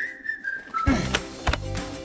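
A short whistle: one thin note that slides slightly down in pitch and lasts under a second. Upbeat music with a steady beat comes in right after it.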